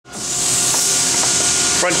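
Steady, high hiss of sanding in an auto body shop, with a faint steady whine under it. A man's voice begins near the end.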